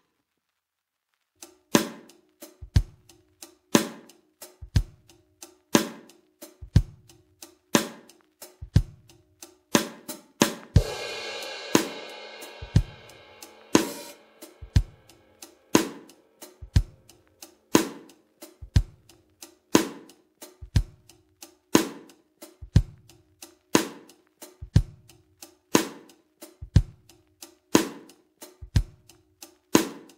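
Multitracked drum kit playing a slow, steady groove: kick and snare strikes about once a second with lighter hi-hat strokes between, starting about a second and a half in. A crash cymbal is hit about eleven seconds in and rings for a few seconds. The kick and snare are being compared with their PuigTec MEQ-5 midrange EQ bypassed and engaged; bypassed, the kick sounds amateur and the snare thin.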